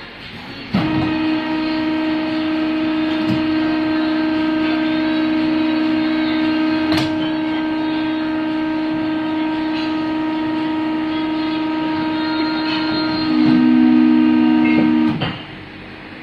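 Hydraulic rubber moulding press running: a steady pitched whine, most likely from its pump, starts suddenly about a second in. Near the end it grows louder as a second, lower tone joins, then it cuts off abruptly.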